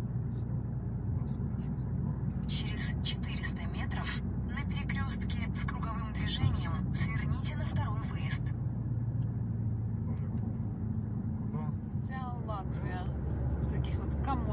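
Car cabin noise from inside a moving car: a steady low rumble of engine and road, with indistinct talking in the middle and briefly near the end.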